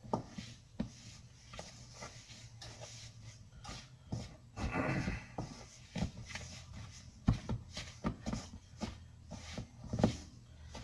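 A spoon stirring and scraping in a stainless steel mixing bowl as flour is worked by hand into a stiff creamed butter-and-sugar dough: irregular knocks and scrapes, with a longer scrape about halfway through. A faint steady hum from a preheating oven runs underneath.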